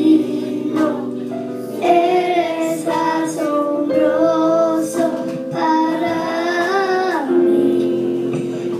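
A young girl singing a Spanish-language worship song into a microphone, over instrumental accompaniment, with long held notes.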